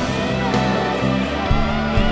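Live worship band playing, led by an electric guitar with an ambient, effects-laden tone from a Schecter BH-1 played through a Kemper amp profiler, over bass, keys and drums. A new low bass note comes in with a hit about one and a half seconds in.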